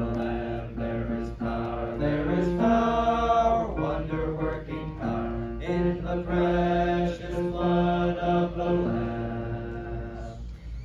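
A group of voices singing a hymn together, in held notes that change pitch about every half second to a second.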